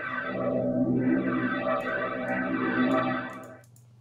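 A sustained chord from a sampled virtual-instrument pad, played through a Leslie-style rotary speaker effect, so its pitch swirls and wavers. It fades away about three and a half seconds in.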